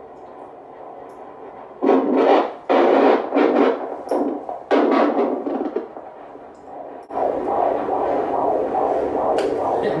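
Fetal Doppler ultrasound audio: several loud whooshing bursts as the probe searches, then from about seven seconds a continuous whooshing signal of the baby's heartbeat being picked up.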